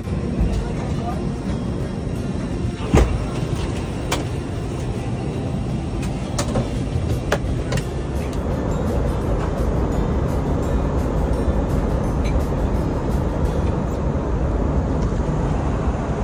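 Steady low hum of noise inside an Airbus A320 passenger cabin, with a few sharp clicks and knocks in the first half.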